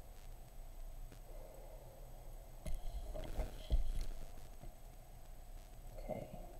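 Steady low room hum, with a short cluster of soft knocks and rustles about three seconds in, the strongest a dull thump, typical of handling on a desk.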